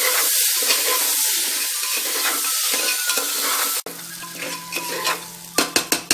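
Raw rice and dal being stirred into hot oil and spices in a pressure cooker, a steady sizzle with the spatula scraping through the grains. The sizzle stops abruptly about four seconds in, and a few sharp knocks of the spatula against the pot follow near the end.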